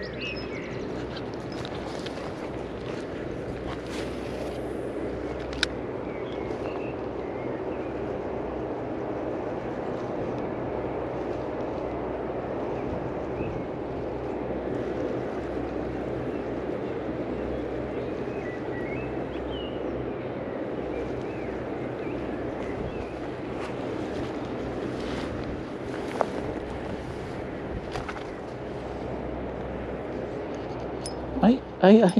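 Steady low outdoor rumble with no clear single source, and two faint clicks.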